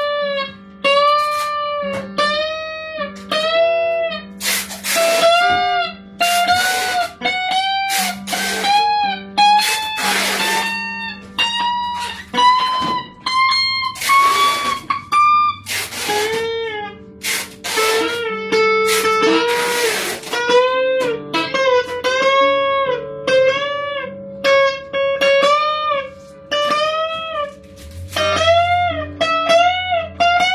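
Thomson Strat-style electric guitar on its bridge pickup, playing a run of single notes bent up in pitch and released, with a few strummed chords in between. The bent notes ring through without choking out, which the player takes to show no dead spots on the frets.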